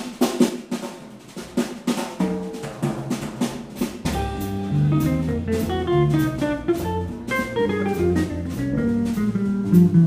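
Live jazz quartet: the drum kit plays alone at first, then about four seconds in the double bass and archtop guitar come in. The guitar plays quick runs of notes over bass and drums.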